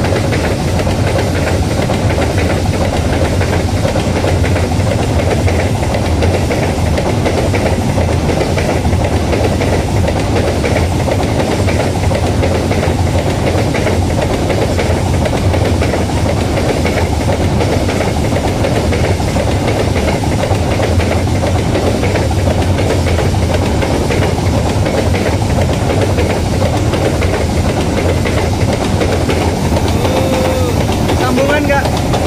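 Empty open-top coal wagons of a Babaranjang coal train rolling past close by, a steady rumble of steel wheels on the rails.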